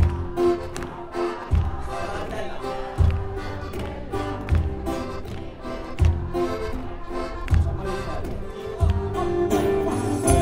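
Live Sicilian folk band playing, with acoustic guitar, bass and a jingling tamburello frame drum over a low beat that falls about every second and a half.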